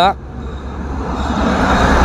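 A motor vehicle approaching along the road, its engine and tyre noise growing steadily louder.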